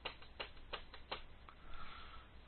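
Computer keyboard keys being tapped: a few irregular, faint clicks over two seconds.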